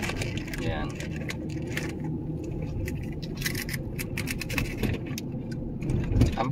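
Car interior noise while driving: a steady low rumble of engine and tyres on the road, with frequent light clicks and rattles throughout.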